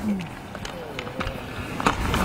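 Hockey stick and puck knocks on the ice: a few sharp clicks, the loudest just before the end.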